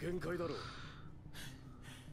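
Faint dialogue from the anime episode playing: a short spoken phrase in the first half-second, then a quiet stretch.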